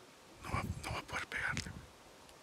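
A man whispering a few quick words close to the microphone, with breathy low rumble on the mic.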